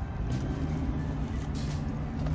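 A car engine running steadily with a low hum, with brief rustling from groceries being handled close by.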